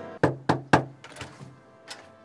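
Three quick knocks on a front door, evenly spaced, as background music cuts off, followed by a fainter knock and a single sharp tap near the end.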